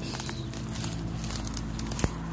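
Footsteps pushing through tall grass and weeds, the stems brushing and crackling against legs and clothing in a run of small, irregular crackles over a steady low hum.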